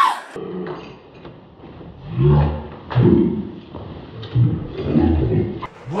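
A man's wordless angry yelling and grunting in about four loud, low-pitched bursts as he attacks what he takes for a rival in the bed.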